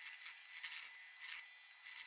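Drill press driving a long 3 mm bit down into a ziricote wood blank: a faint, steady motor whine with a hiss of cutting that swells slightly a couple of times.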